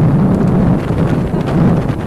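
Wind buffeting the microphone as a loud, uneven low rumble, from moving along a road.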